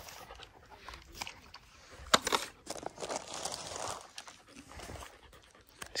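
A puppy panting softly, with a few sharp clicks mixed in.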